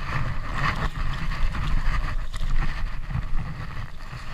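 Wind buffeting a chest-mounted action camera's microphone as a rumble, mixed with irregular rustling of a winter jacket as the arms move and reach for the fish.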